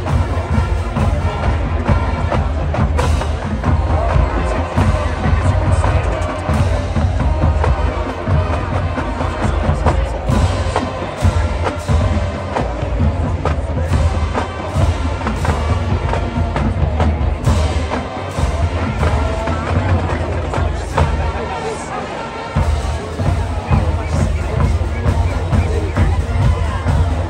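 High school marching band playing on the field: brass and woodwinds over drumline percussion with a heavy bass drum, with crowd noise from the stands underneath.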